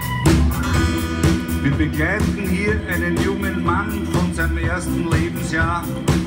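Live rock band playing: a drum kit keeps a steady beat under bass and guitars. From about two seconds in, a lead line plays notes that bend up and down.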